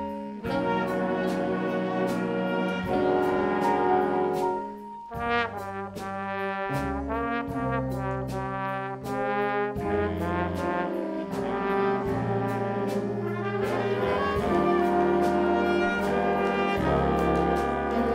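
High-school jazz band playing: trumpets and trombones with woodwinds over a steady beat, with a short dip in the sound about four to five seconds in. A trombone solo stands out in the middle.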